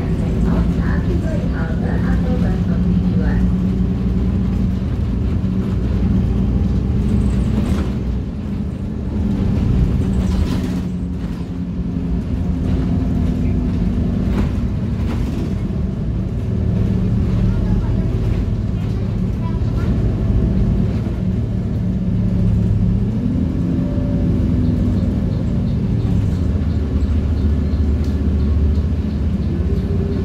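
Cabin noise of a moving Transjakarta city bus: a steady engine hum with road noise underneath, the engine note rising briefly about three-quarters of the way in.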